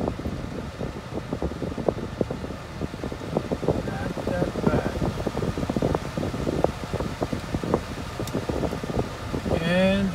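Steady whir of a car's cabin ventilation fan, with scattered small clicks and rustles throughout.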